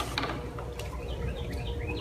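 Small birds chirping briefly in the background, a few short chirps in the second half, over a low steady rumble, with a sharp click near the start.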